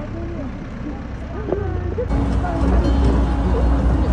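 Several voices chattering and calling. From about two seconds in, a steady low rumble of a moving vehicle joins in under the voices.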